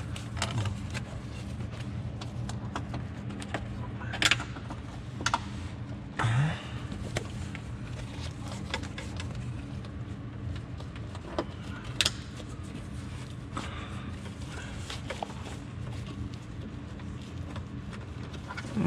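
Scattered clicks and rustles of plastic clips and fasteners as a side curtain airbag is pressed and clipped into a car's roof rail, the loudest click about four seconds in, over a steady low workshop hum.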